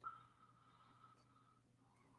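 Near silence: a pause with no audible sound.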